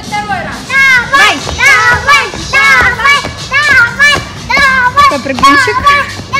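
A small child's excited, very high-pitched shouts and squeals, repeated in quick succession, with music in the background.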